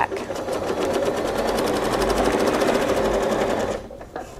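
Home sewing machine stitching steadily at speed, its needle going in a rapid, even rhythm as it quilts an arc along a ruler, then stopping shortly before the end.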